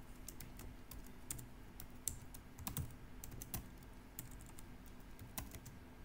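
Computer keyboard typing: faint, irregular key clicks as a line of code is typed.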